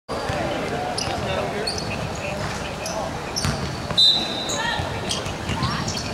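Basketball bouncing on a hardwood gym floor during dribbling at the free-throw line, with players' voices echoing in the hall. A brief shrill high note about four seconds in is the loudest sound.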